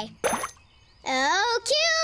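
A short cartoon pop, as the floating message bubble vanishes, then a girl's long called-out voice that rises in pitch and holds on one note.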